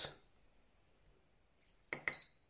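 Two button presses on a DL24P electronic load, each a click followed by a short high-pitched beep: one right at the start and one near the end, as the discharge current is stepped up to 1 A.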